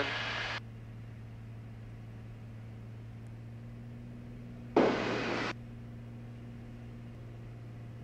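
Steady low drone of the Beechcraft A36 Bonanza's engine and propeller in the cockpit, heard through the headset intercom feed. A short burst of radio hiss breaks in about five seconds in.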